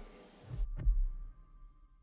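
Two low, dull thumps in quick succession, like a heartbeat's double beat, about halfway through.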